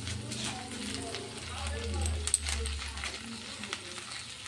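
Butter and oil sizzling faintly in a frying pan, damped under a heap of freshly added raw spinach leaves, with a few small pops. Faint voices in the background.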